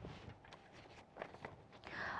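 Faint rustle of paper script sheets being handled on a desk: a few soft brushes about a second in and again near the end, otherwise near silence.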